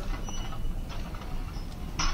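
Steady background noise of a phone-filmed gym clip, with a couple of faint thin tones and no distinct impacts.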